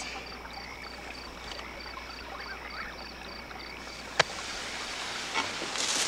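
Crickets chirping at night, about four chirps a second, over a faint hiss. About four seconds in there is a sharp pop, and a firework's fizzing hiss then builds, strong near the end as it sprays sparks.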